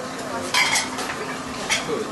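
Metal spoons clinking and scraping against small bowls and plates, with a sharp clink about half a second in and another near the end.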